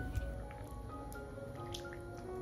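Soft background music, a slow melody of held notes, with faint drips and small splashes of water as a spatula is moved through chicken feet in a wok of water.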